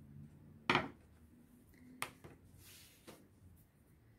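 Handling noises on a cutting mat. A single sharp knock about a second in, as a plastic rolling pin is put down, is followed by a few lighter clicks as a craft knife is picked up.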